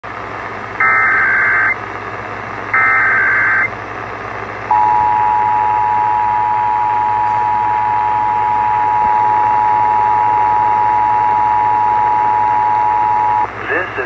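Emergency Alert System broadcast on an AM radio's speaker: two short, buzzy SAME digital header bursts about a second apart, then the two-tone EAS attention signal held steadily for about nine seconds, over a hiss of AM static. It is the opening of a national periodic test alert.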